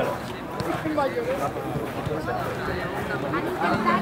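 Indistinct chatter of many voices talking at once, some of them high-pitched, with no single voice standing out.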